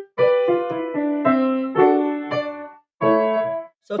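Piano played with both hands: a run of notes stepping downward, then after a brief break a short group of notes about three seconds in, stopped sharply.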